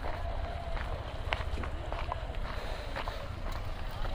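Footsteps on a stone-paved walkway, as small scattered clicks over a low, steady rumble.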